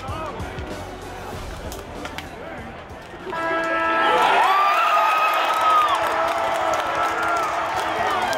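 Music swells in about three seconds in, with long held notes and a gliding melodic line, over the noise of a cheering stadium crowd.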